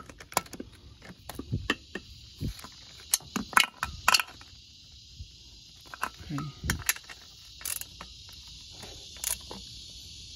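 Small hand ratchet and socket clicking in short irregular runs, with light metal taps of the tool, as 13 mm intake-manifold bolts are run down by hand; a steady high hiss sits underneath.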